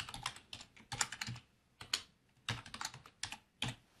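Computer keyboard being typed on: irregular runs of keystroke clicks in quick bursts with short pauses, stopping shortly before the end.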